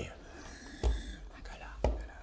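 Two dull knocks about a second apart, hands coming down on a wooden tabletop.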